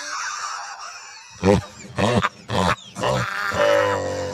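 A person's voice making several short non-word vocal sounds in brief bursts, after a second or so of hiss.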